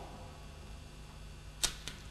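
Two short sharp clicks a quarter second apart, the second fainter, near the end, over a steady low hum.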